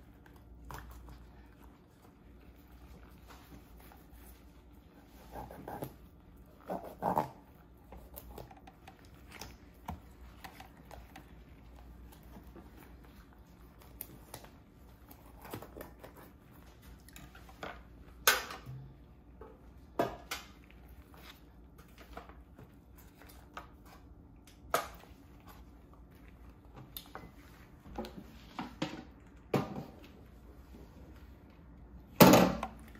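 A knife scoring slits into a whole raw tilapia: scattered light clicks and scrapes, with a few sharp knocks.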